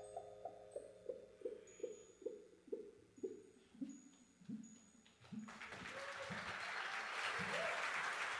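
A slow line of single struck notes, about two a second, stepping down in pitch as each one dies away, ending the song. About five and a half seconds in, the audience starts applauding.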